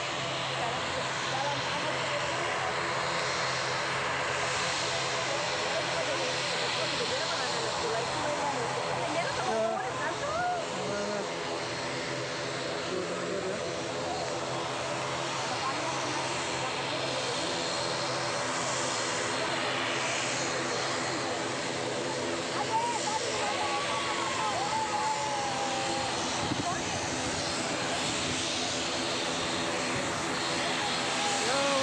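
Engines of a twin-engine airliner droning steadily as the plane comes in to land and rolls along the runway, a constant multi-tone hum. Voices of a watching crowd chatter over it.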